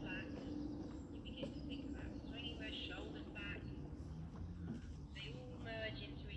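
Small birds singing in short, repeated warbling phrases over a low steady hum, with indistinct voices faint in the background.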